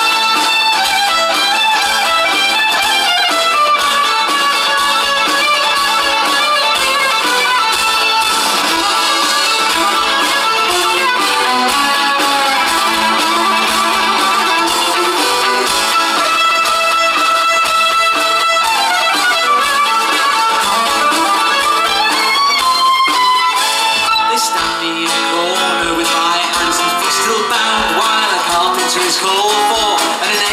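Folk-rock band playing an instrumental passage live: a fiddle plays the lead over guitar accompaniment.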